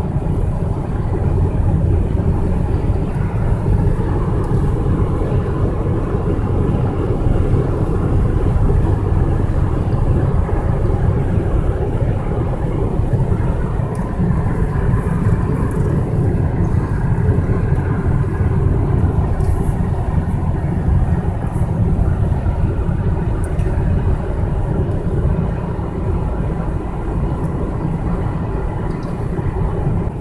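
Steady road noise of a car driving at speed, heard from inside the cabin: an even low drone of tyres and engine.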